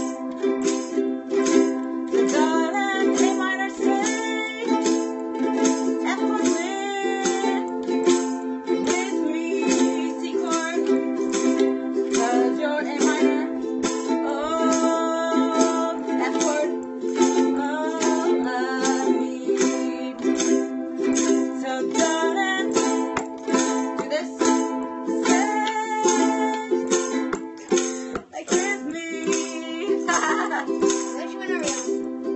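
Ukuleles strummed steadily through a slow song in chords, with a woman singing the melody over them.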